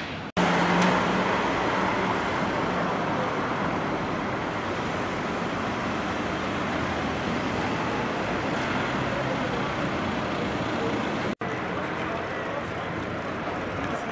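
Urban street traffic: cars passing on the road in a steady wash of traffic noise, loudest about half a second in, broken by two brief sudden gaps near the start and about eleven seconds in.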